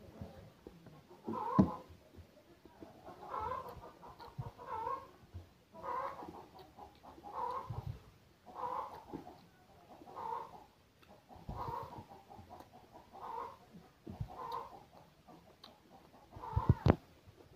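A man chewing a mouthful of rice by hand, with wet mouth sounds recurring about once a second, and a few soft thumps.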